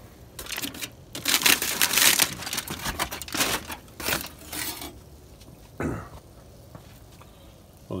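Aluminium foil crinkling and crackling in quick bursts as it is pulled open by hand, stopping about five seconds in.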